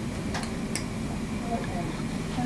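Stainless steel toenail nippers snipping through a toenail: two sharp clicks less than half a second apart.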